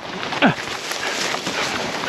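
Rustling of dry grass and parachute canopy fabric with wind noise on a helmet-mounted microphone, after a hard parachute landing. A brief voice sound falling in pitch comes about half a second in.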